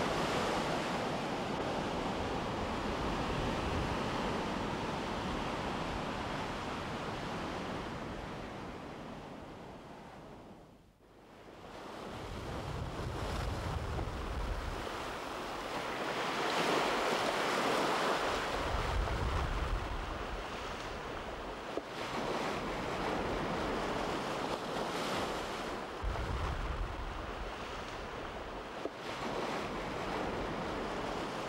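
Ocean surf: waves breaking and washing in as a steady rush. It fades almost to silence about eleven seconds in, then rises again, with three heavier, deeper surges of the swell later on.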